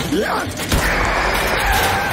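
Cartoon soundtrack: music with short rising squeals at the start, then a rumbling rush of noise as the wheeled cage cart speeds off across the sand.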